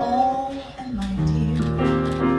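Live show tune: a woman singing over piano and bass guitar, her voice gliding up in pitch early on, with a low bass note coming in about a second in.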